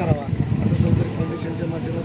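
A man speaking, his voice continuing through the pause in the transcript, over steady low background noise.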